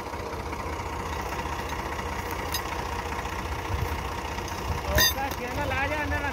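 Massey Ferguson 260 tractor's diesel engine running steadily with a low, even pulse, driving a wheat thresher through its shaft. A sharp click about five seconds in.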